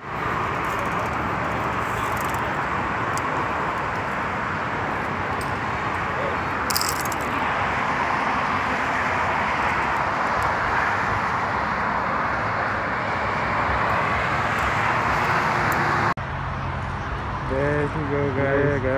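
Steady rushing roar of distant road traffic. It cuts off abruptly near the end, where a voice takes over.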